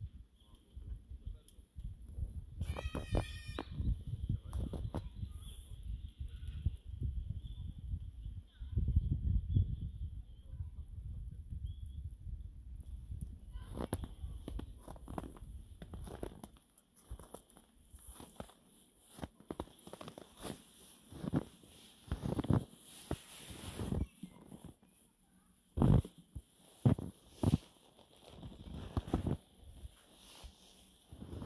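Footsteps in deep fresh snow, a step roughly every second through the second half. Before them a low rumble runs, with a short high-pitched call about three seconds in.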